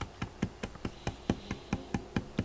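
Fingertips tapping rapidly on a hard desktop, a steady run of light taps about five a second, used to draw a cat's attention.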